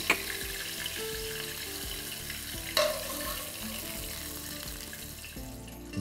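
Food sizzling in a hot frying pan, a steady hiss, with the clink of a metal spoon against the pan just at the start and again about three seconds in.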